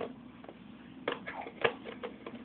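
Scissors cutting through packing tape on a cardboard parcel: a few short snips and crackles, the sharpest about one and a half seconds in.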